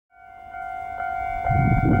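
DE10 diesel locomotive's horn sounding one long, steady blast as the train approaches, with the low rumble of the locomotive growing louder about one and a half seconds in.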